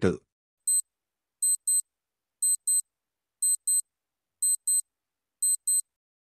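Electronic clock-style timer sound effect counting down the answer time: one short high-pitched beep, then a pair of quick beeps once a second, five times.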